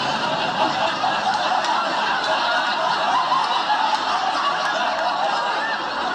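A studio audience laughing, many voices together, at an even level throughout.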